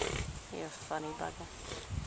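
Mostly speech: a person exclaims "bugger" after a short noisy burst at the very start, over a steady low outdoor rumble.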